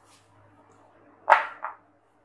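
Marinated beef and bone pieces handled in a clay bowl: about two-thirds of the way through, a sharp wet smack, followed quickly by a smaller one.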